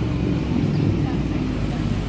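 A car driving past close by: a steady low rumble of engine and tyres.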